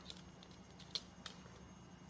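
Quiet room with a couple of faint light taps about a second in, a small dog's claws on a hard floor as it moves and sits.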